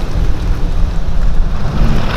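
A 2022 Ram pickup's Cummins turbo-diesel engine running as the truck drives away: a loud, uneven low rumble.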